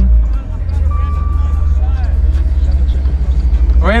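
Loud, steady low rumble of a Maserati sedan's engine and road noise heard from inside the cabin while driving.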